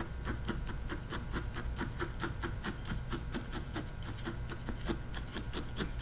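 Felting needle tool stabbing rapidly and repeatedly into wool, a steady run of sharp ticks at about seven stabs a second, over a low steady hum.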